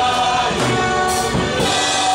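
Church gospel choir singing a worship song together, voices amplified through microphones, the notes held in a steady sustained blend.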